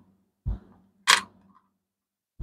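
A soft thump about half a second in, then a single sharp click about a second in, from cents being handled and set down on a wooden table.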